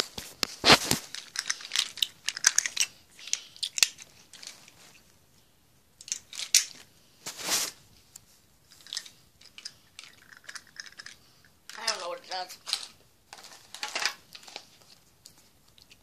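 Plastic candy wrappers and packaging crinkling and rustling in the hands, in short irregular bursts, mixed with knocks of the phone being handled. The crackling is thickest in the first few seconds.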